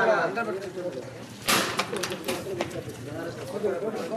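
A coconut smashed on the ground with one sharp crack about a second and a half in, followed by a few smaller knocks, over a crowd chattering.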